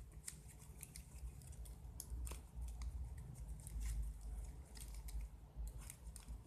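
Ribbon crinkling and rustling in the fingers as its ends are tucked through and pulled tight into a folded ribbon rose: a run of irregular small crackles.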